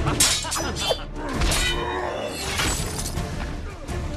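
Battle sound effects of ice shattering and heavy crashes, several in the first two seconds, over loud orchestral film score.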